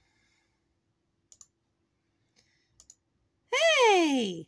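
A few faint, short clicks, like a computer mouse being clicked, spread over the first three seconds. Near the end a loud voice cries out on one long, falling note.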